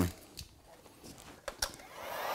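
Mostly quiet handling of vinyl car-wrap film at a hood edge, with a few faint clicks. A heat gun starts blowing right at the end.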